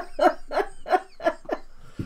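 A woman laughing hard: a quick run of about seven short laughs, each dropping in pitch, dying away near the end.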